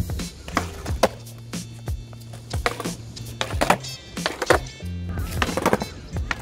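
Skateboard tail kicked down onto concrete pavement, a series of sharp wooden clacks at irregular intervals: practice of the ollie pop, where the tail strikes the ground so the board bounces up. Background music with a steady bass runs underneath.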